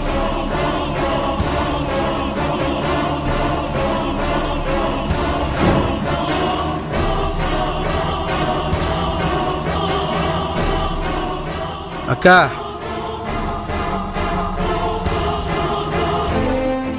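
Dramatic background score: sustained choral voices over a steady, evenly spaced percussion beat.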